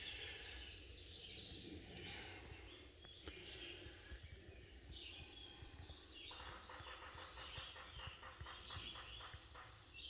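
Faint outdoor woodland ambience with birds calling. From about six seconds in, a rapid run of short repeated notes sounds for a few seconds, over a low rumble.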